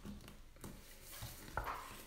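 Faint handling of a tarot deck being shuffled in the hands: soft rustling of the cards with a few light taps.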